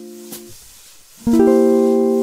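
Guitar in a chord-melody cadence exercise: an F6 chord rings and is cut off about half a second in, and after a short pause a four-note C7 chord is strummed about 1.3 s in, its notes sounding in quick succession and then ringing on. Faint ticks about once a second keep time underneath.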